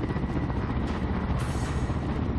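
Kamov Ka-52 attack helicopter's coaxial rotors beating fast and steadily as it flies close by, with a brief hiss about one and a half seconds in.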